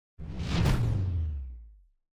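A whoosh sound effect over a deep low rumble, starting suddenly, peaking under a second in and dying away over the next second.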